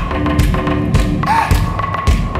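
Live band music in an instrumental passage without vocals. A drum kit keeps a steady beat, with kick-drum thumps about two a second under held notes.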